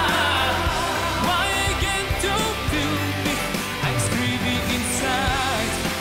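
Male lead vocalist singing live into a handheld microphone over full band accompaniment with a steady bass line; near the end he holds a wavering note.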